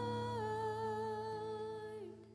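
Worship singing over acoustic guitar: one long held sung note that steps down slightly in pitch about half a second in, with the guitar chord ringing underneath.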